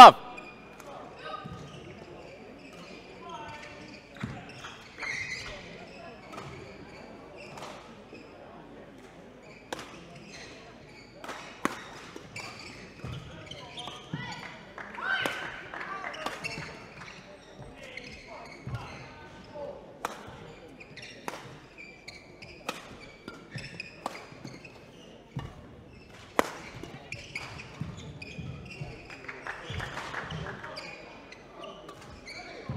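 Badminton rally: rackets striking a feather shuttlecock in sharp, single hits spaced irregularly about a second or two apart, with faint voices in the background.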